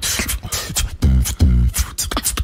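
Beatboxing into a microphone: a long hissing sound, then quick sharp clicks and snare-like strikes, and two deep buzzing bass notes near the middle of the stretch.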